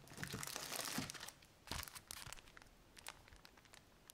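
Plastic wrapping crinkling as packaged items are handled and a notepad in a clear plastic sleeve is lifted out. A dense burst of crackling comes in the first second, then scattered crackles.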